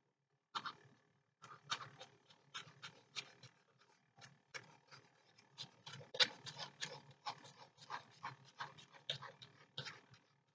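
Liquid glue squeezed from a plastic squeeze bottle with a fine nozzle onto a paper page: faint, irregular sputtering and ticking, a few times a second.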